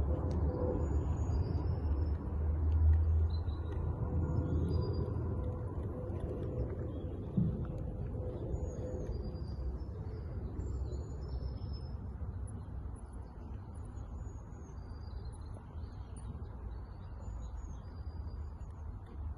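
Small birds chirping and singing on and off throughout, over a steady low rumble that is loudest in the first few seconds. A single knock comes about seven seconds in.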